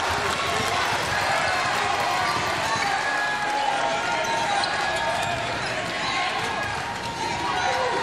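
Live basketball game sound on a hardwood court: a ball dribbling, with players' voices calling out and a low murmur from a sparse crowd in a large hall.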